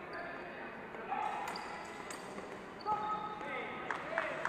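Echoing voices in a large sports hall, with a sharp knock about three seconds in that leaves a short ringing tone.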